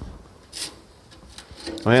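Quiet workshop with faint handling noises and one short soft rub about half a second in; a man starts speaking near the end.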